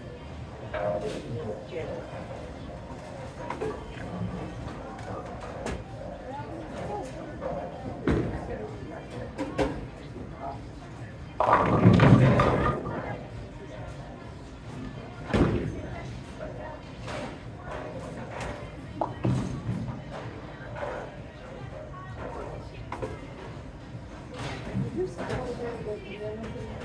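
Bowling alley din: background chatter and music, with repeated thuds and crashes of balls striking pins down the lanes. The loudest crash, lasting about a second, comes about halfway through.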